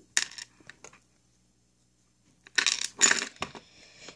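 Zip-top plastic bag stuffed with small packets of modelling clay, crinkling and rustling as it is shaken and handled, in short bursts: once at the start and again about two and a half seconds in, with dead silence between.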